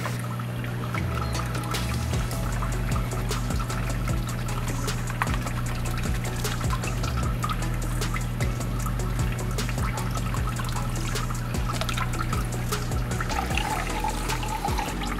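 Water trickling and splashing steadily as a small aquarium pump returns water into a plastic tub, under background music.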